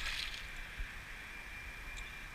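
Quiet, steady outdoor background hiss with a faint thin high tone running through it, a brief soft noise right at the start and a small tick a little under a second in.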